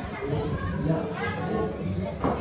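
Children's and adults' voices chattering in the background, with no single sound standing out.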